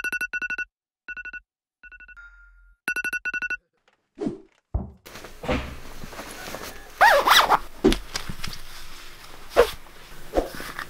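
Rapid high electronic beeps in short bursts, four groups over the first few seconds, like an alarm going off. A few thumps follow, then clothing rustles and knocks as a nylon jacket is pulled on.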